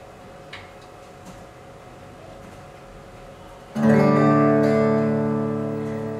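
Quiet room tone with a couple of faint clicks, then near the end a strummed acoustic guitar chord starts suddenly and rings out, slowly fading. It is recorded music played back through JBL L100 Classic loudspeakers driven by a tube amplifier in the room.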